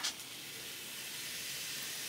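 Coca-Cola fizzing and foaming out of a can after Mentos have been dropped in, a steady hiss.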